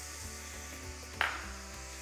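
Background music over a saucepan of onion and curry paste sizzling as red lentils pour in, with one brief rush of noise about a second in.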